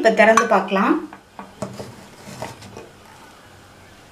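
A few light metal clinks from a Prestige Deluxe Alpha stainless steel pressure cooker as its whistle weight is set on the steam vent.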